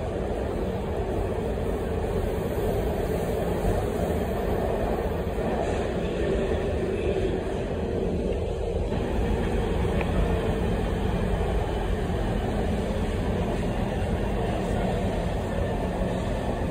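Inside an LA Metro Red Line subway car in motion through the tunnel: a steady, unbroken rumble of wheels on rail and the car's running gear, heaviest in the low range.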